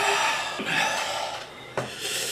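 A man breathing out hard through a wide-open mouth, two long breathy exhales, as if from the heat of a hot sauce. A short knock comes near the end.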